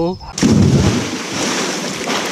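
A person plunging into a swimming pool: a sudden splash about half a second in, louder than the talk around it, followed by churning water and falling spray that slowly fades.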